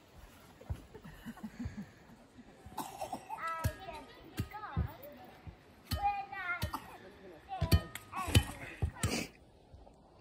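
Young children's voices, high-pitched calls and chatter, with a few scattered knocks in the first couple of seconds.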